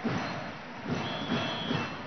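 Crowd murmur in an indoor sports hall. About a second in, a single steady high whistle blast lasts just under a second, the referee's signal to serve.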